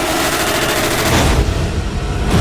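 A loud, rapid rattling noise effect stuttering many times a second over a low rumble. The hissing top of it drops away about one and a half seconds in, leaving the rumble.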